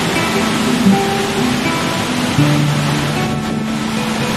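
A steady rush of water, with soft music of long held notes laid over it.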